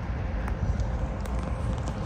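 Footsteps of someone walking on pavement, a few faint steps over a steady, low outdoor rumble.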